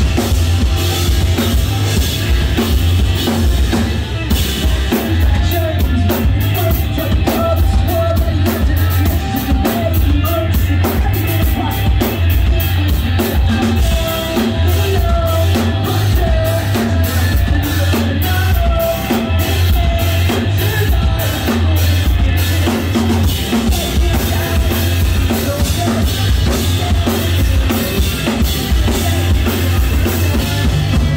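Live rock band playing loudly: electric guitars over a drum kit keeping a steady beat, with evenly spaced cymbal hits through the middle stretch.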